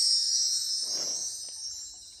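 Quiz game's sparkling correct-answer chime, a high jingling shimmer that fades out, with a short soft burst of noise about a second in as the score screen comes up.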